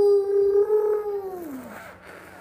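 A toddler's long, sustained hooting vocal with his mouth pressed against a wooden puzzle board, holding one pitch and then sliding down and fading out.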